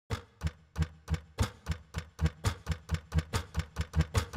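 A series of sharp knocks, each with a dull low thud and with silence between them, coming faster and faster: from about three a second to about five a second.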